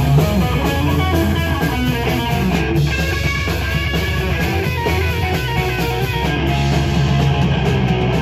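Live rock band playing: electric guitar runs through quick lead notes over bass guitar and drums.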